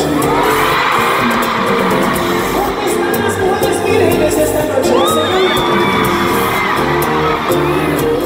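Live bachata band playing with a male lead singer, and the crowd whooping and cheering over it, heard through a phone recording from the audience.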